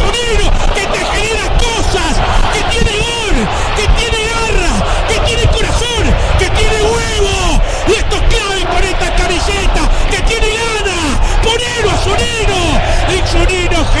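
A radio football commentator shouting excitedly in a goal celebration: a fast, unbroken stream of high-pitched yells that rise and fall.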